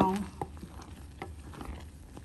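Tomato, sugar and lemon juice mixture boiling in a stainless steel pot, with faint bubbling pops and a wooden spoon stirring through it. Scattered soft ticks over a low, even hiss.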